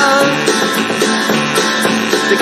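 Rock band recording with guitars playing, in a gap between sung lines.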